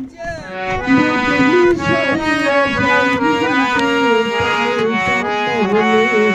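Harmonium playing a melody in sustained, reedy notes that step from pitch to pitch, as an instrumental passage between sung lines of a devotional song.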